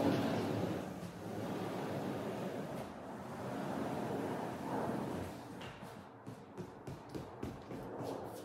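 Multi-panel sliding glass patio door panels rolling along their track as they are pushed open, a continuous rumble for about five seconds, then a run of light clicks and knocks as the panels stack.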